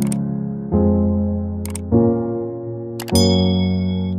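Electric piano background music, a sustained chord struck about every 1.2 seconds. Over it, sharp mouse-click effects from the like/subscribe overlay come at the start, about 1.7 seconds in and about 3 seconds in, followed by a bell-like ding that rings for about a second near the end.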